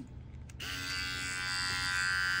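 Geemy pet hair clipper switched on about half a second in, then running with a steady electric buzz.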